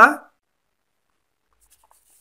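A spoken word trailing off, then near silence: a pause in the speech.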